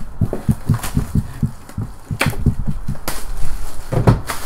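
A trading card hobby box and its packs being handled: a quick run of soft low thumps, about five a second, then two sharp clicks about a second apart with more knocks between.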